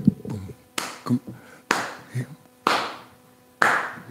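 Four hand claps about a second apart, keeping a slow, steady beat as a song gets under way.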